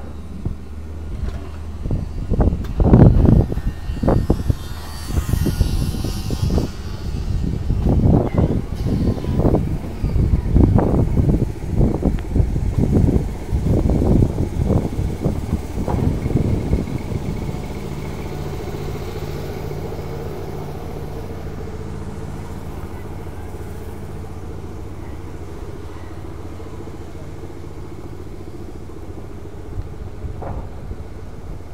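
Boardwalk repair-site noise: a run of loud, irregular low thumps about once a second for the first half, then a small engine running with a steady hum.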